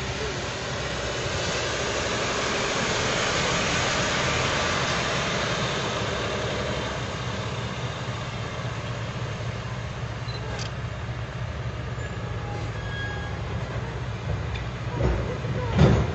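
Road traffic on wet asphalt: a van passes close, its tyre hiss on the wet road swelling over the first few seconds and then fading. A low, steady engine sound runs underneath as a heavy truck approaches slowly.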